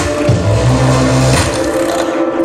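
Loud music for a stage act: a low bass line under held higher notes, with a percussion hit at the start and another about one and a half seconds in.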